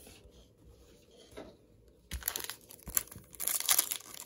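Foil wrapper of a Topps Chrome trading-card pack crinkling and tearing as it is opened by hand, starting about halfway in after a near-quiet start.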